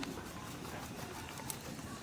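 Soft handling noise of hands pinching off and shaping a ball of dough, with a couple of light clicks.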